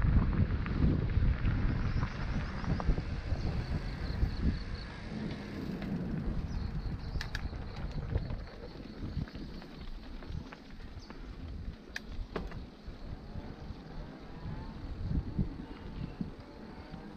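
Mountain bike rolling down a rough dirt trail: wind rumble on the camera microphone mixed with the rattle and sharp clicks of the bike over bumps, heavier in the first half and easing off after about eight seconds. Faint high chirps of birds or insects come through in the middle.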